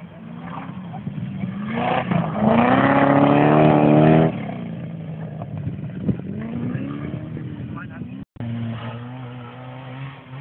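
Rally car engine pulling hard as the car passes close on a gravel stage, the revs climbing to a loud peak at about four seconds, then dropping away and fading as it goes by. Near the end a second rally car's engine comes in steadily as it approaches.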